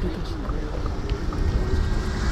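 Quiet talk over a loud, steady low rumble.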